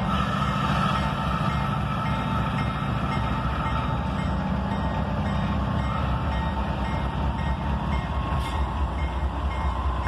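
CSX diesel-electric locomotive rolling slowly past at close range, its engine giving a steady low rumble with a faint steady whine above it.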